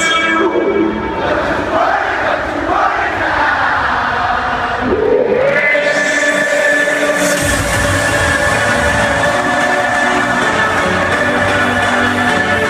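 Loud electronic dance music over a festival PA with a crowd singing and chanting along during a breakdown. A rising sweep about five seconds in leads into held synth chords, and the deep bass comes back in about seven and a half seconds in.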